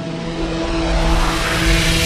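Logo-intro sound effect: a rising whoosh swell over a few held synth tones, growing steadily louder and brighter.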